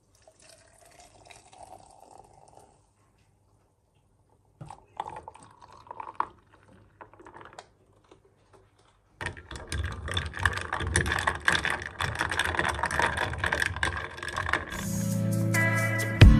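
Coffee poured over ice into a glass mason-jar mug: a soft pour with light clinks, then from about nine seconds a louder stretch of dense crackling and fizzing from the ice and froth in the glass. Music comes in near the end.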